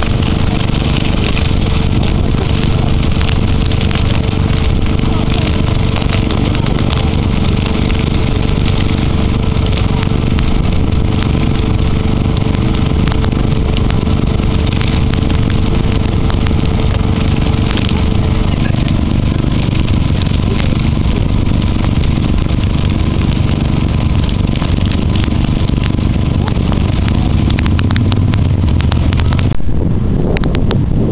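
Dry prairie grass burning at a flame front: a loud, steady rush with dense crackling throughout. Under it runs a faint steady hum, one tone of which stops about two-thirds of the way in.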